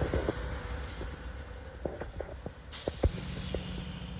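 Freight train rolling slowly past, led by a locomotive in Santa Fe warbonnet paint: a low rumble with a run of sharp clicks and knocks from the wheels on the rails. A steady low hum comes in about three seconds in.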